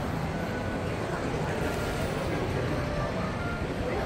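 Steady indoor shopping-mall background noise: a low, even rumble with no distinct events.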